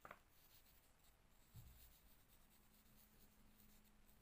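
Very faint scratching of a felt-tip pen writing on paper, with a soft low thump about one and a half seconds in.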